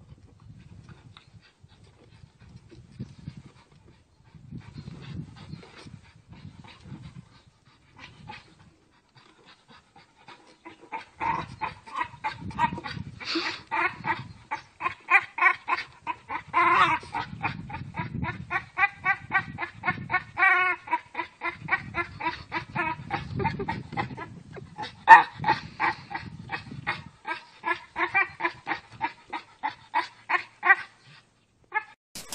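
Staffordshire bull terrier making a long string of rapid, high-pitched vocal pulses, several a second, starting about a third of the way in after a quieter stretch.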